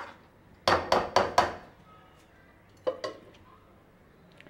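Metal ladle clinking against a steel cooking pan while stirring gravy: a quick run of four clinks just under a second in, then two more about three seconds in.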